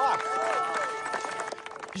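Voices from a film soundtrack, over a sustained background music chord of long held notes.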